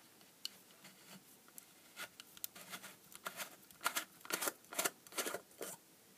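Amber plastic lens cover of an LED strobe beacon being unscrewed from its base by hand: a run of short plastic scrapes and clicks from the threads and seal, starting about two seconds in.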